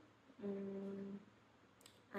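A woman hums once, a short, steady closed-mouth "mmm" held at one pitch for under a second, a little way in; faint room tone around it.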